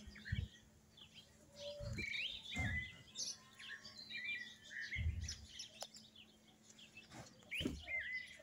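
Birds chirping and calling in the background: scattered short high chirps throughout, with a few soft low thumps in between.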